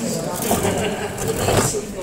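Several people talking over one another and laughing.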